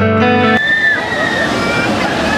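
Guitar music for about half a second, then it cuts out and wave-pool sound comes through: water splashing and sloshing with people's voices.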